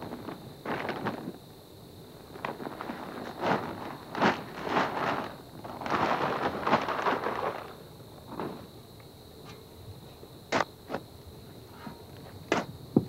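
Peat moss and composted cattle manure being tipped out of plastic bags onto dug soil: the bags rustle and the material slides out in irregular bursts, the longest about six seconds in. Near the end there are two sharp knocks.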